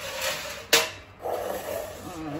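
Small kitchen knife cutting strips through a sheet of puff pastry on parchment paper, with a scraping, rustling sound and one sharp tap about a third of the way in.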